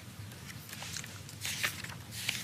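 Faint paper rustling with a few soft clicks, about a second in and again near the end: the pages of a book being handled on a desk.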